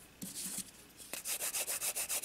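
Nail file rubbing back and forth across the free edge of a gel-coated nail tip, shaping the front edge, in quick, even strokes several times a second that begin about a second in.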